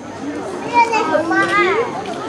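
Young children's voices talking and calling out, high-pitched and rising and falling in pitch.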